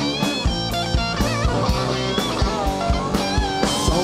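Live rock band in an instrumental passage: lead electric guitar playing sustained, bent notes with vibrato over a steady drum kit and bass.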